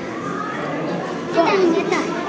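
Chatter of many young people's voices talking at once in a crowded corridor, with one voice louder and closer near the end.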